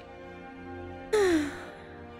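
A woman's relieved sigh about a second in, breathy, its pitch falling, over soft steady background music.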